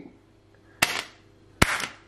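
Knife tip stabbing through the taut plastic film lid of a ready-meal tray. Two sharp pops come just under a second apart as the film is pierced for microwaving.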